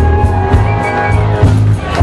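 A live blues band vamps on a steady groove, with the electric bass guitar's low notes prominent under sustained held notes higher up.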